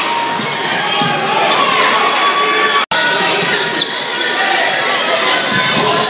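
Basketball dribbling and bouncing on a hardwood gym floor among crowd voices, in a large, reverberant gym. The sound cuts out abruptly for a moment about three seconds in.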